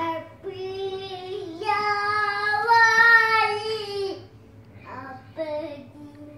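A toddler girl singing a few long held notes, the pitch stepping up partway through and loudest in the middle, followed by two short vocal sounds near the end.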